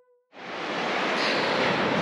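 A held musical note dies away. About a third of a second in, a steady rushing noise of beach surf and wind begins and holds.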